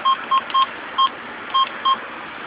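Six short beeps from a gas pump's keypad as its buttons are pressed. They are unevenly spaced and all of one steady pitch.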